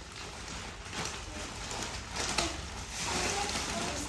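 Metallic foil gift wrap crinkling and rustling as it is torn and pulled open by hand, irregular and uneven in loudness.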